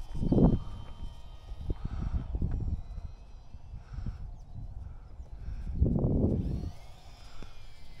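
Wind buffeting the action camera's microphone in uneven low rumbling gusts, strongest about half a second in and again around six seconds. Under it runs the faint high whine of the small electric RC plane's twin motors, flying high overhead.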